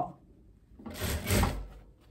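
A brief rustling, sliding sound of linen fabric being handled and fed at an industrial sewing machine, lasting about a second near the middle.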